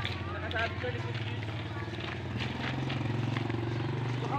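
Small engine running steadily, its pitch stepping up a little about two seconds in.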